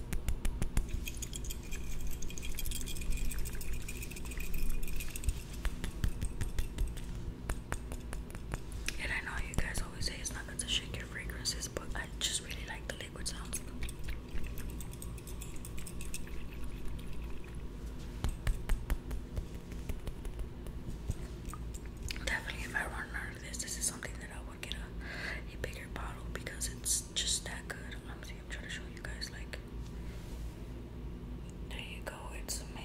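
Soft whispering close to the microphone in two stretches, over a steady run of fine clicks and taps from a glass perfume bottle being handled.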